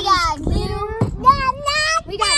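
A child singing a few drawn-out notes in a sing-song voice.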